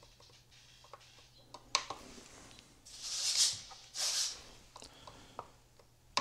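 Faint clicks of the buttons and scroll wheel on a Radiomaster TX12 radio transmitter as values are changed, with two short hisses about three and four seconds in.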